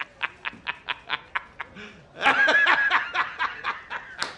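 A man laughing hard in rapid staccato bursts, about six a second, breaking into a louder, higher-pitched laugh about two seconds in before falling back to short bursts.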